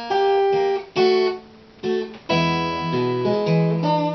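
Cutaway acoustic guitar playing the closing chords of the song: a few short strummed chords with gaps between them, then a fuller, held chord with low bass notes about two seconds in.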